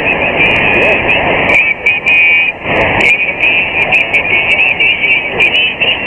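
Kenwood TS-590 receiver audio on the 40-metre band in lower sideband: loud band noise with garbled, overlapping sideband voices and whistling tones from interfering stations.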